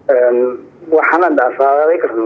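A man speaking in two short phrases with a pause between them: speech only.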